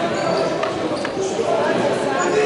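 Indistinct voices and chatter in a large gym hall, with a couple of short knocks about halfway through.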